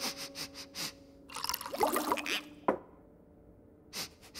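Several quick cartoon sniffs, then a bubbling liquid sound effect with gliding pitches and a single sharp click. A soft held music note runs underneath.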